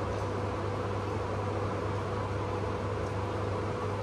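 An air curtain (door blower) mounted above the shop doorway running: a steady fan rush with a low hum and a faint steady tone underneath, loud enough to be a nuisance.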